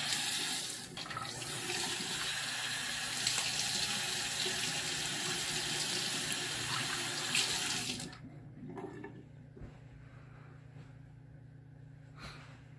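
Bathroom sink tap running steadily into the basin during a wet shave, then shut off suddenly about eight seconds in, leaving only faint small clicks.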